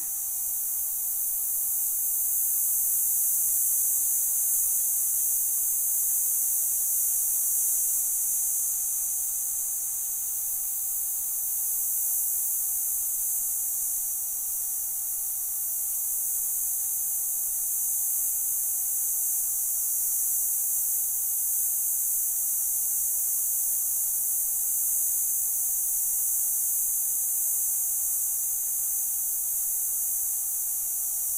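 Digital Radio Mondiale (DRM) digital radio transmission played as an audio signal: a steady, dense hiss filling the high range, with a thin steady mid-pitched tone underneath. It is the coded digital data signal, not speech.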